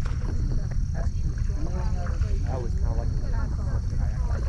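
Indistinct chatter of several people talking across the water, over a steady low rumble of wind on the microphone.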